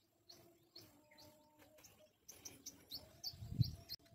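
Faint small-bird chirping: short, quick repeated chirps, about two or three a second, growing louder and busier in the second half. A low rumble comes shortly before the end.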